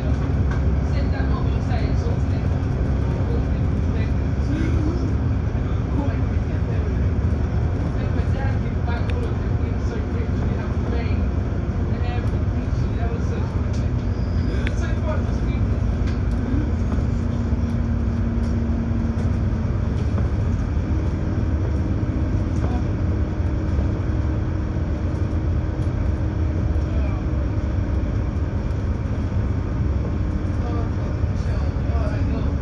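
Inside a VDL DB300 double-decker bus driving at speed: a steady low rumble of engine and road noise, with a faint whine that shifts pitch a few times.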